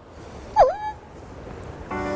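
A short, whistle-like swooping tone about half a second in that dips in pitch and rises back before holding briefly, over faint background noise. Soft background music begins near the end.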